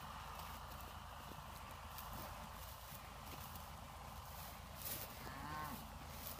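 A single short moo from one of the cattle about five seconds in, rising and then falling in pitch. Under it, faint footsteps swish through dry grass.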